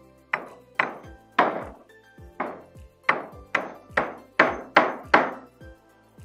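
Hammer driving a nail into a wooden timber rail, about ten blows that come faster toward the end, over background music.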